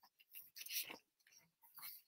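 Faint rustling of paper sheets being handled, in a few short bursts around the first second and again near the end.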